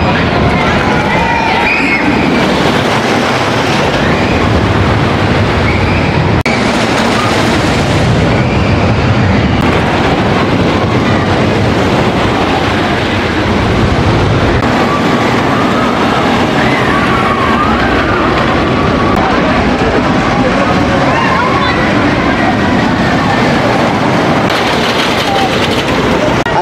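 A wooden roller coaster train running along its track, a steady, loud noise, with people's voices mixed in.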